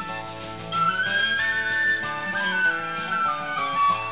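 Instrumental folk break: a flute plays a melody that climbs and falls in steps over plucked acoustic guitar.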